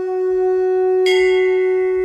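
A conch shell (shankh) blown in one long, steady note. A second, brighter tone joins about a second in.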